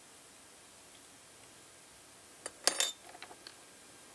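Metal tweezers set down on a metal parts tray: a short clatter of clinks about two and a half seconds in, followed by a few lighter ticks.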